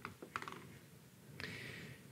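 A few faint laptop keyboard clicks in the first half second, followed by a soft hiss near the end.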